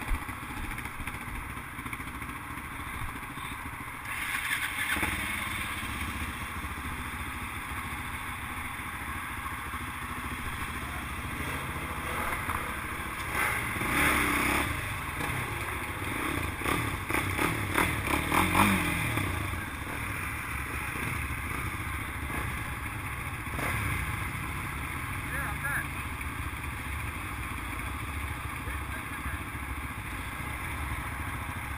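Several sports quad bike engines idling, with a few short revs a little past halfway.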